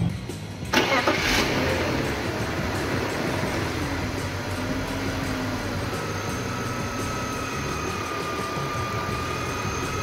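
BMW E39's inline-six engine starting about a second in, with a short burst from the starter as it catches, then idling, its speed rising and falling a little before it settles. This is the first start after a fresh oil and filter change.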